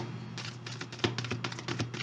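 A deck of cards being shuffled in the hands: a quick, uneven run of small clicks of card on card, several a second.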